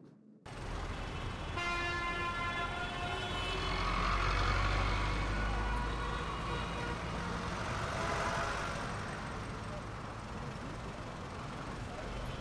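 Street traffic ambience: vehicles rumbling past. About a second and a half in, a vehicle horn sounds for a couple of seconds.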